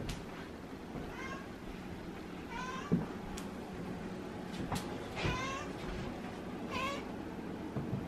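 A long-haired orange tabby cat meowing four times, the third meow the longest and loudest. A single sharp knock comes about three seconds in.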